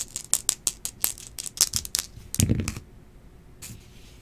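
Two dice rattled in a cupped hand, a quick run of sharp clicks, then thrown onto the table mat about two and a half seconds in, where they land and tumble with a duller clatter.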